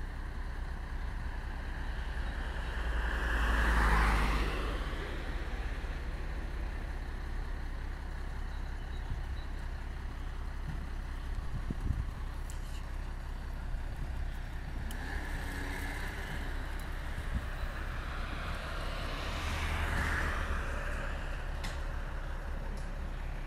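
Star 244 fire engine's diesel engine idling with a steady low rumble, while vehicles pass on the road, swelling and fading about four seconds in and again near the end. A single sharp knock about midway.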